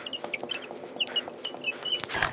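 Marker squeaking on a glass lightboard as a word is written in capitals: a quick run of short, high squeaks.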